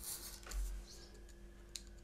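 Craft knife cutting through thin card on a cutting mat: faint scratching strokes, a soft knock about half a second in and one sharp click near the end.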